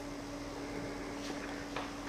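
Quiet room tone: a steady low hum under a faint hiss, with a couple of faint ticks in the second half.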